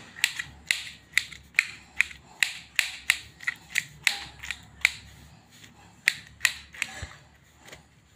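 Knife chopping roasted, peeled brinjal on a stainless steel plate, the blade clicking sharply against the steel about two or three times a second, then stopping with one last tap near the end.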